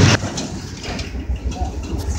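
Passenger train running, heard from inside the carriage as a low rumble.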